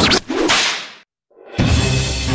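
Sound effects of a news-channel logo sting: a loud swish cut off just after the start, then a second whoosh that fades out over about a second. After a brief silence, theme music with a heavy low beat begins near the end.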